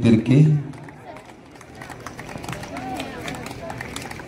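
Speech: a man's voice calling out a name ends about half a second in, followed by quieter background chatter of people.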